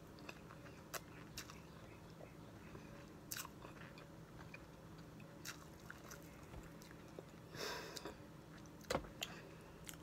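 Faint, scattered sounds of a person biting and chewing a lemon-type citrus wedge, working at its tough white pith and peel: a few short wet clicks and one slightly longer burst near the end.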